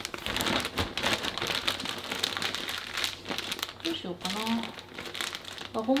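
A clear plastic bag full of soybeans being lifted and handled, its plastic crinkling continuously with many sharp crackles.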